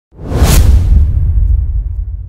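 Whoosh sound effect over a deep low rumble, swelling in fast, peaking about half a second in, then fading slowly: the sting of a TV news channel's animated logo intro.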